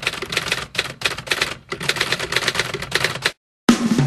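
Typewriter typing sound effect: rapid runs of key clicks in three bursts with short pauses, stopping a little over three seconds in. Loud music starts just before the end.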